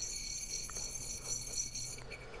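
Tungsten carbide insert rubbed face down on a 250-grit diamond sharpening stone under light pressure, a steady high-pitched scratchy rasp.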